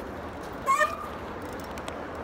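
Steady outdoor background noise, with one short high squeak about two-thirds of a second in.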